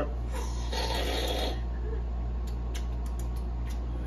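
A sip drawn from a beer can: a short rasping slurp about a second in, followed by a few faint clicks, over a steady low hum.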